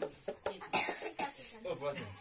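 People talking in a small room, with one short, sharp noisy burst about three quarters of a second in that is the loudest sound.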